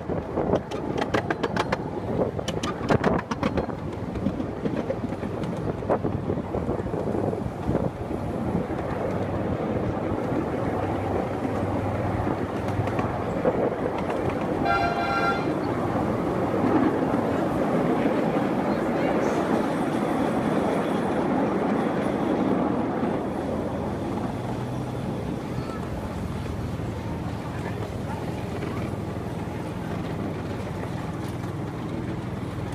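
Miniature railway train running along its track, a steady rumble of wheels on rail with a run of clicks over the first few seconds and a brief toot about halfway through.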